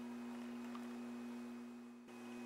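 Steady low electrical hum over faint room hiss, dipping quieter near the end.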